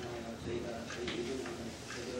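A man's voice speaking in a low, even tone, praying aloud as the closing prayer.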